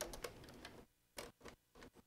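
Near silence with a few faint, scattered clicks of computer keyboard keys.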